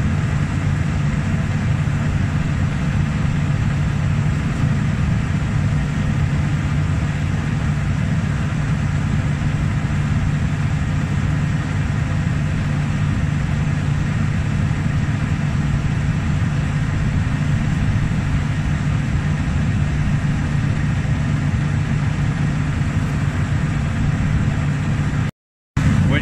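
John Deere S-series combine's engine running steadily, a constant low drone that breaks off for a moment near the end.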